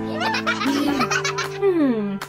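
Cheerful background music with high-pitched giggling over it, and a long falling tone near the end.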